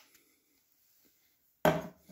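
Near silence, then about one and a half seconds in a steel rasp is set down on a wooden tabletop with a single sudden knock.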